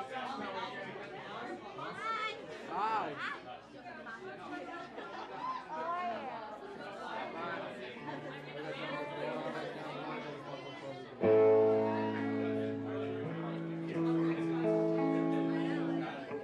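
Crowd chatter in a large club room, then about eleven seconds in a loud held chord from the band's amplified instruments comes in suddenly and shifts pitch twice.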